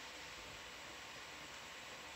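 Steady, faint hiss with a thin, steady high tone under it and nothing else happening: the background noise of an open audio line with no one talking.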